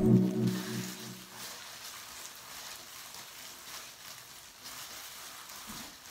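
Background music fades out within the first second. After that comes faint, crinkly rustling from a plastic hair-dye cape and gloved hands.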